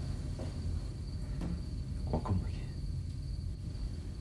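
Crickets trilling in one continuous high tone, the insect ambience of a night garden, over a low steady hum.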